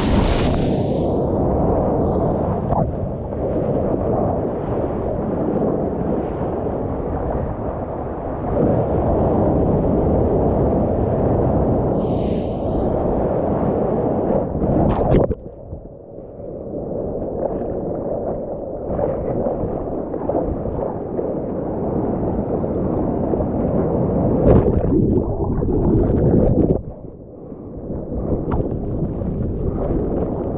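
Whitewater churning and splashing right against a GoPro at water level as a surfer paddles through broken waves: a loud, muffled, rumbling rush with occasional sharp splashes. Twice, about halfway and near the end, it drops suddenly to a dull hush for a second or so as the camera goes under water.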